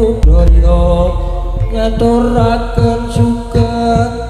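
Javanese gamelan music: bronze metallophones and gongs ringing with drum strokes, under a sustained chanted vocal line.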